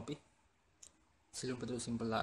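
A man's voice speaking briefly in a small room, with a single short, faint click just under a second in, as a marker pen meets the whiteboard.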